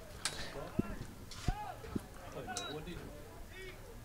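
Faint shouts and calls of players and spectators at an outdoor soccer match, with a few short low thumps.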